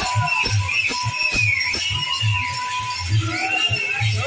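Live procession music: a drum beating a steady rhythm about three times a second, with jingling metal percussion and a high wavering melody line over it.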